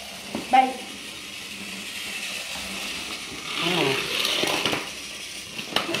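Indistinct speech, a short utterance about half a second in and a longer one near the middle, over a faint steady hum.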